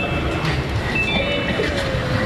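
Audience laughter and crowd noise in a concert hall, a dense steady wash. A short high tone sounds about halfway through, and a held note comes in just after it.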